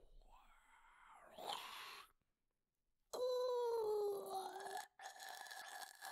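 A person's voice making drawn-out wailing, moaning noises in imitation of a shark: three long calls, the loudest starting about three seconds in and sliding slowly down in pitch, the last held steadier and higher.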